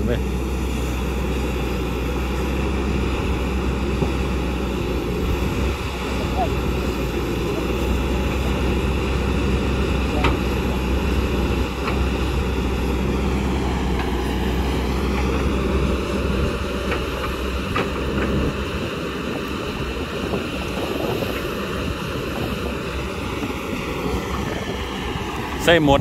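Kobelco SK200 hydraulic excavator running steadily while digging, its diesel engine droning with a higher whine over it; the whine dips in pitch about halfway through and comes back up.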